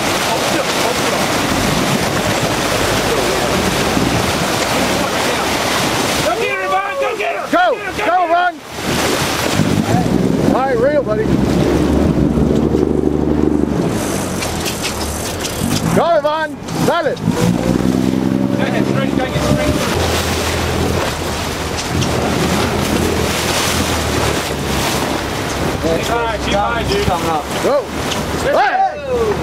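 Sportfishing boat's engine running under heavy wind and water noise on the microphone, its note swelling twice in the middle. People shout in short bursts throughout, including a call of "Go!" near the end.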